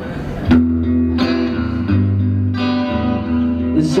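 Electric guitar playing a run of ringing chords, the first struck about half a second in and a new one roughly every two-thirds of a second after.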